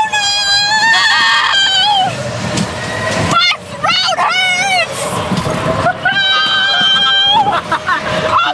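Riders screaming on a tumbling Zipper carnival ride: long, high screams in three spells, with a rushing noise underneath.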